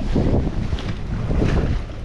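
Strong wind buffeting the microphone, a steady low rumble.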